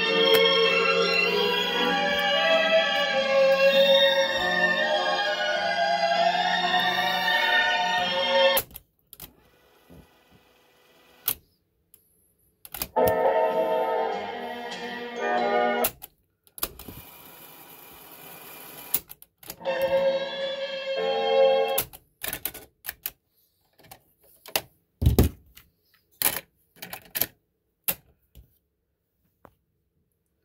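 Panasonic RQ-309S portable cassette recorder playing music through its small built-in speaker, stopped and started by its mechanical piano keys. The music cuts off abruptly after about eight seconds and comes back twice for a few seconds. The last six seconds hold a run of sharp key clicks and one heavy clunk.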